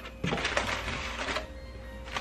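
Paper takeout bag rustling as it is handled, a spell of crinkling in the first second or so that then dies down.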